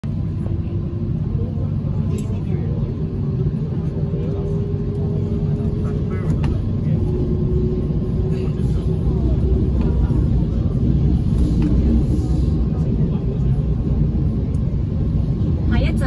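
MTR K-train passenger car running between stations, heard from inside the cabin: a steady low rumble with a faint whine that drifts slightly in pitch, growing a little louder about two-thirds of the way in.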